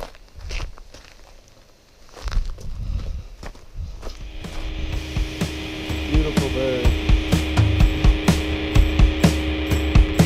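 Footsteps on a dirt and gravel track for the first few seconds. About four seconds in, rock music with drums and guitar fades in and grows steadily louder.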